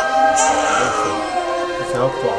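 A choir singing long, held notes of a church hymn, with the chord shifting slightly partway through.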